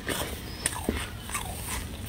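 Close-up crunching of freezer frost being bitten and chewed: several sharp, brittle crunches in quick succession.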